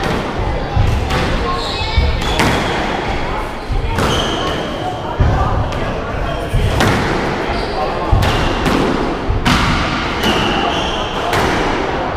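Squash rally: sharp cracks of the ball off the rackets and walls, roughly one a second, with short high squeaks of players' shoes on the wooden court floor.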